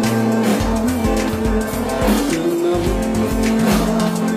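Loud live band music: acoustic guitar and drums with a singer's held, gliding notes over a steady beat.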